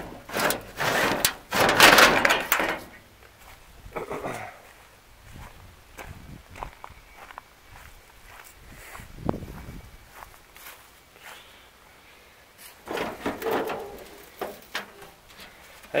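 Sheet-metal louvered hood panel of a 1922 Ford Model T being handled, clattering loudly for the first two seconds or so, then scattered knocks and scuffs, with one sharp knock about nine seconds in and another bout of handling about thirteen seconds in.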